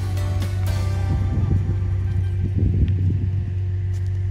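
Background music with a steady low bass tone, and a low rumble between about one and three seconds in.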